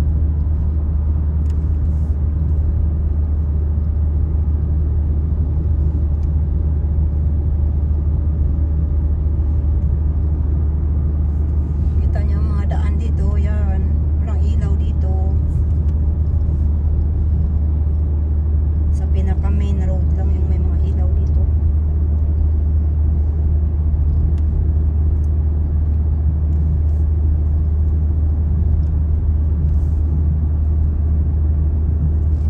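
Steady low rumble of a car's road and engine noise heard from inside the cabin while driving, with a faint voice twice, about twelve and nineteen seconds in.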